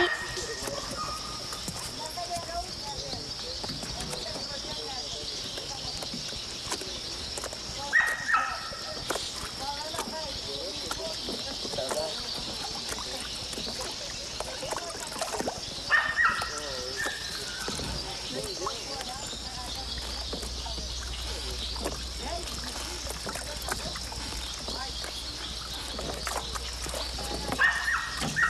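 Outdoor ambience with a steady high-pitched hum and short animal calls about eight seconds apart, near 8 s, near 16 s and again just before the end.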